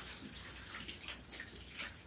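Soft, irregular rustling of paper pages, several quick rustles a second over a faint low room hum.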